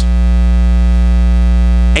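Loud, steady electrical mains hum and buzz, a low drone with many evenly spaced overtones, picked up in the microphone and sound-system chain.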